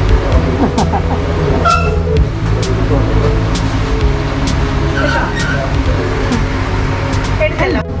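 Indistinct voices over a steady low rumble of road traffic, with a sharp click about once a second.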